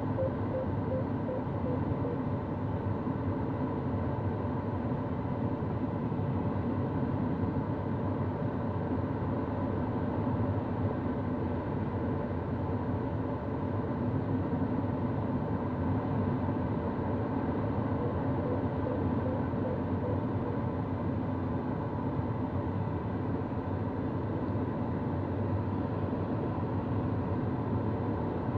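Steady rush of airflow and cockpit noise inside a sailplane in gliding flight, unchanging throughout.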